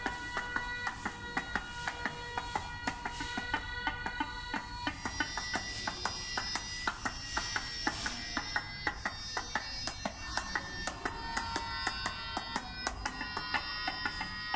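Synthesized sound from SuperCollider driven by body-worn gesture sensors: a dense stream of short pitched notes at many different pitches, peppered with sharp clicks. A set of higher notes joins about five seconds in.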